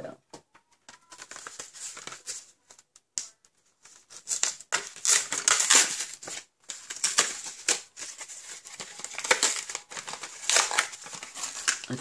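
Clear plastic packaging of an adhesive refill crinkling and rustling as it is handled and opened. A few faint clicks come first, then repeated loud bursts of crinkling from about four seconds in.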